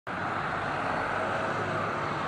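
Steady city-street traffic noise, with vehicle engines running at a low hum.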